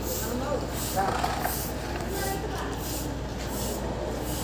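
Indistinct voices of people talking, over a steady background noise and low hum.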